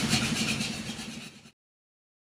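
An engine idling steadily, with a hiss of rain over it; the sound fades down and cuts off to silence about a second and a half in.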